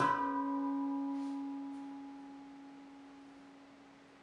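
Stainless-steel C# Celtic Minor handpan: a last chord struck with both hands rings out and slowly fades, one low note sustaining longest over the higher ones. Two faint light taps sound a little over a second in.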